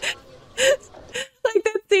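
A person laughing in short, breathy bursts that trail off, then speech begins near the end.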